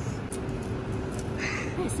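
Café room noise: a steady low rumble with a faint held tone, and a woman's voice near the end.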